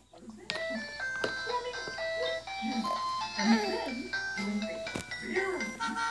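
Electronic jingle from a baby's activity-walker toy: a tune of clear, stepping notes that starts about half a second in. A voice vocalises over it.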